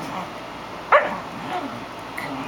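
A small terrier gives a single short, sharp bark about a second in, a play bark while wrestling with other terriers.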